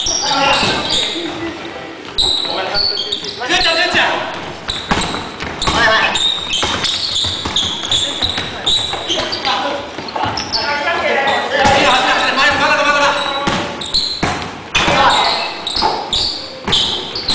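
Basketball bouncing on a wooden gym floor during a game, a scatter of sharp thuds, with players' voices calling out, all echoing in a large gymnasium.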